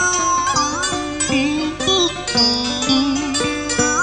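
Instrumental cải lương karaoke backing from Vietnamese traditional plucked string instruments, a run of quick notes with several bent up and down in pitch.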